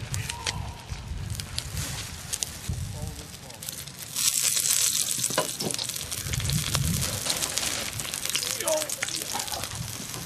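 Green onions sizzling in a hot carbon steel wok, cooked in it to help season the new wok. The sizzle is steady with scattered crackles and grows louder about four seconds in.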